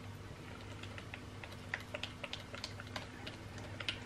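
Spatula stirring thick soap batter in a plastic jug, clicking and tapping irregularly against the jug's sides, more often in the second half. A low steady hum runs underneath.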